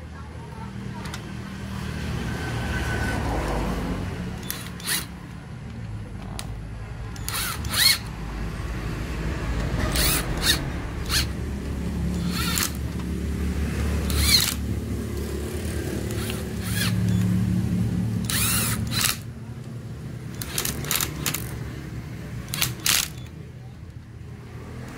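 Corded electric screwdriver whirring in runs as it drives the clutch spring bolts of a motorcycle engine, with sharp clicks now and then from its slip clutch as each bolt reaches the set tightness.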